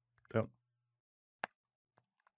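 A short mouth noise from the narrator near the start, then one sharp computer click about a second and a half in.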